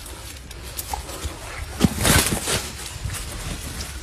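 A large fish slapping and thrashing on muddy ground, with scattered dull thuds; the loudest is a sharp slap a little under two seconds in, followed by about half a second of scuffling.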